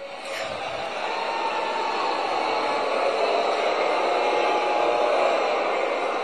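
Audience in a large hall cheering and applauding, swelling over the first couple of seconds and then holding steady.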